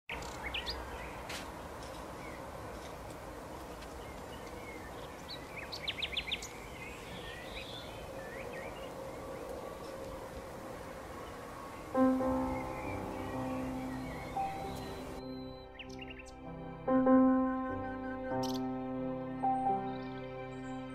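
Birds chirping over a steady outdoor background hiss, with a quick run of chirps about six seconds in. About twelve seconds in, background music starts, and a few seconds later the outdoor hiss cuts out, leaving the music with a few chirps.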